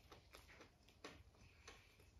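Faint eating sounds: a handful of irregular soft clicks and smacks from a mouth chewing rice and curry eaten by hand.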